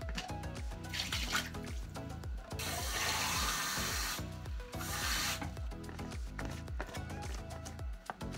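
Kitchen tap running into a stainless steel sink as a travel cup is rinsed, for about a second and a half starting two and a half seconds in and again briefly around five seconds in. Background music with a steady beat plays throughout.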